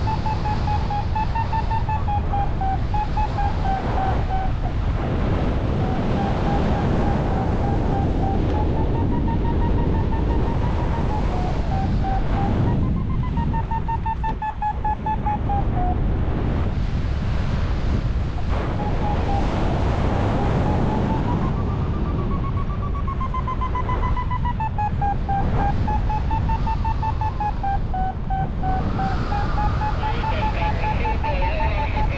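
Paragliding variometer beeping rapidly, its pitch wavering up and down as the climb rate changes, with short breaks. Steady wind rushing on the microphone underneath.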